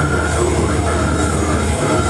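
Live slam death metal played loud: heavily distorted electric guitar over a fast, pounding kick drum, with no break in the sound.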